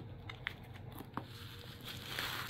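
A few faint, light clicks of fingers touching and pressing small clear plastic screw-top bottles held in a storage case tray.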